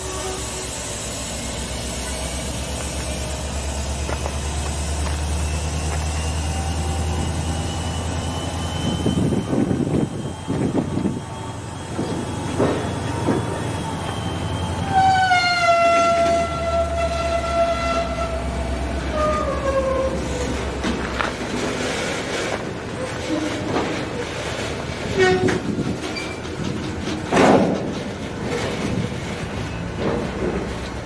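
Lumber-loaded freight flatcars rolling past with a steady low rumble of wheels on rail. About halfway through, a loud high squeal of steel wheels sets in and slides slowly down in pitch for several seconds. Scattered sharp clicks and knocks follow near the end.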